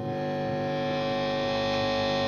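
Electric guitar through an MXR Distortion III pedal and a high-gain amp, a note held and sustaining under heavy distortion, with hum, slowly getting louder while the pedal's knobs are adjusted.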